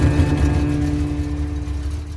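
A movie trailer's closing sound design: a deep, low drone with a steady held tone above it, fading steadily.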